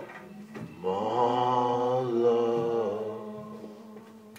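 Worship singing: one long held sung note that comes in about a second in, wavers slightly in pitch, and fades away near the end.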